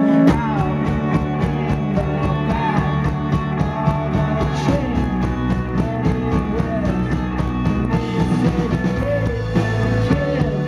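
Live indie rock band playing loudly through a PA: electric guitars, bass guitar and a drum kit keeping a steady beat.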